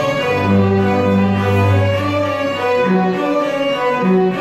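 A small string ensemble of violins and a double bass playing together with bowed, sustained notes. A long low bass note is held through the first half while the violins move above it.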